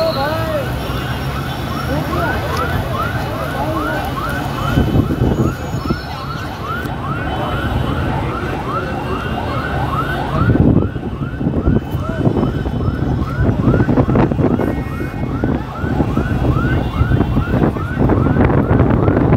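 Emergency vehicle siren on a fast yelp, a rising wail repeating about three times a second, with crowd voices behind it.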